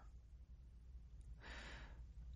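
Near silence, with the narrator faintly drawing a breath about one and a half seconds in.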